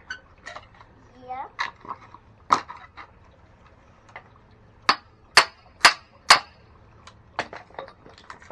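A hammer striking the back of a small hatchet to split kindling slivers off a wooden log: scattered sharp metallic knocks, then a run of four strong strikes about half a second apart past the middle, and another knock near the end.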